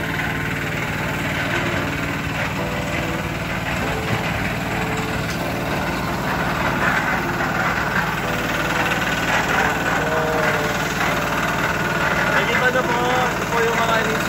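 An engine running steadily at a construction site, a continuous low hum. Indistinct voices can be heard under it, mostly in the second half.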